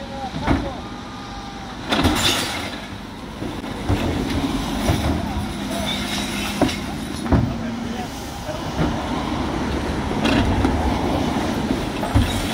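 Refuse truck running steadily while its Terberg OmniDEKA electric bin lift raises and tips a black plastic wheelie bin into the rear hopper, with several sharp clunks from the bin and lift mechanism.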